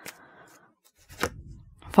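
Tarot card being handled and drawn from the deck: a soft rustle, then a single light tap about a second in.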